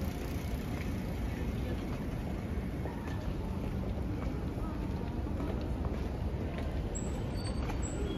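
City street ambience: a steady low rumble of road traffic, with the indistinct voices of passers-by.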